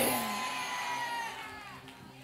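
The end of a loud shouted line of preaching trails off with the hall's echo in the first half second, leaving soft sustained background music notes held steadily and fading lower.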